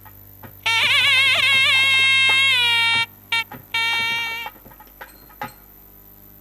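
Nadaswaram playing an ornamented melody: one long held phrase with wavering, sliding pitch, then a few shorter notes that stop about four and a half seconds in. A couple of short knocks follow near the end, over a steady low hum.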